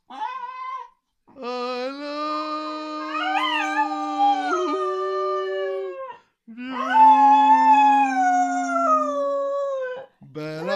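Cocker spaniel howling in long drawn-out notes: a short one, then two long howls of several seconds each. The first long howl wavers up and down in pitch midway and steps up in pitch near its end.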